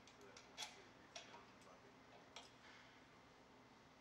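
Near silence broken by a few faint metallic clicks and taps, the strongest about half a second in: a bolt and the light fixture's mounting arm being handled as the bolt is fed into the arm.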